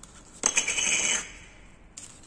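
A short, high, scratchy rubbing sound, under a second long, about half a second in, as hands handle a polystyrene foam ball decorated with fabric roses.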